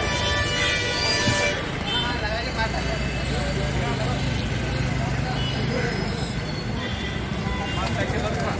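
Busy street ambience: traffic and people talking in the background, with a vehicle horn sounding for about a second near the start.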